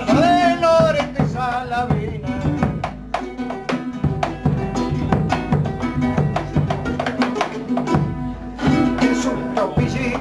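Nylon-string guitar strummed in a chacarera rhythm between sung verses, with a voice holding a wavering note in the first second.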